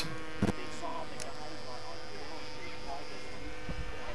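A steady electrical hum and buzz, unchanging in pitch, with faint indistinct murmuring underneath and a brief click about half a second in.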